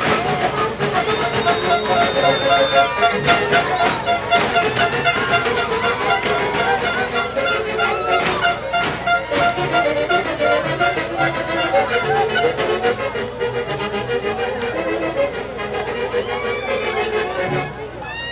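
Live huaylarsh played by a stage band with saxophones, a lively traditional Andean dance tune that drops away near the end.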